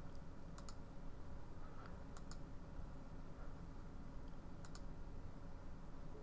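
Computer mouse clicking: three quick double clicks, each a close pair of sharp ticks, spread over a few seconds, with a couple of fainter single clicks between them, over a faint steady low hum.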